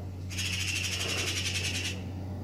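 Handheld police breathalyser giving a rapid trilling electronic beep for about a second and a half, shortly after the subject has blown the required steady breath into it: the device signalling that the breath sample is taken. A steady low hum lies underneath.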